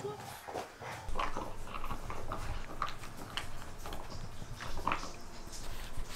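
A border collie making small sounds: a scattered run of short, sharp clicks and soft noises, with no barking.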